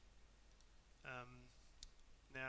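Near silence with faint room tone, broken by a short hummed filler sound from the voice about a second in and a single computer mouse click near the end.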